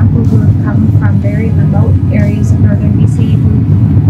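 A woman speaking over a loud, steady low rumble.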